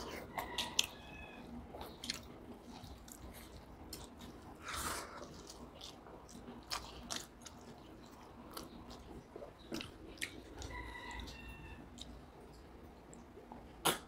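Close-miked chewing of rice and egg curry eaten by hand, with wet smacks and sharp mouth clicks.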